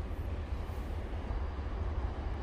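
Steady low rumble of outdoor background noise with a faint even hiss above it; nothing sudden stands out.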